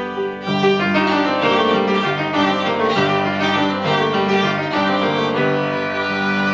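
A live trio of violin, viola and piano playing an arrangement in a classical style, the bowed strings carrying moving lines over the piano. The texture is thin for the first half second, then fills out with busier notes.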